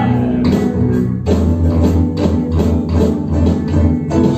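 Live band playing a groove: electric bass, drum kit, electric keyboard and electric guitar together over a steady beat, with no singing.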